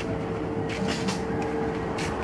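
Steady mechanical hum with a constant mid-pitched tone, broken by several short sharp clicks.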